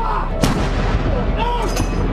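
A single loud shot about half a second in, ringing on afterwards, followed by a brief raised voice and a cluster of sharp clicks near the end.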